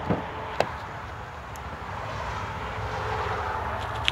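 Steady outdoor background rumble and hiss, slowly growing louder, with one sharp click a little over half a second in.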